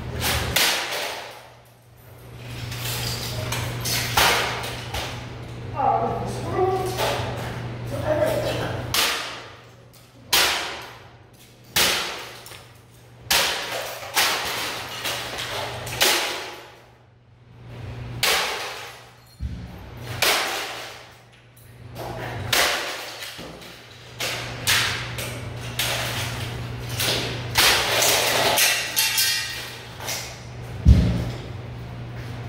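Repeated sledgehammer blows smashing a plastic printer on a wooden stump: sharp cracking hits with clattering plastic, roughly one every one to two seconds, over a steady low hum.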